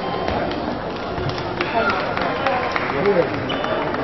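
Table tennis doubles rally: a celluloid ball clicking off rubber bats and the table several times, under a steady murmur of voices.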